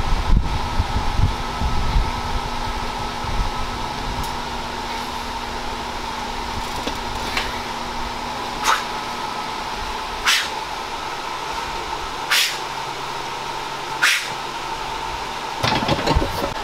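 A mechanical fan running steadily, a constant whir with a steady hum in it. Over it come five short sharp sounds about one and a half to two seconds apart, in the second half.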